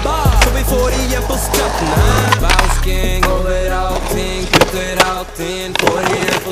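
Skateboard wheels rolling on pavement, with sharp clacks of the board popping and landing: one about a third of a second in and several more near the end. Over it plays a music track that changes about two seconds in.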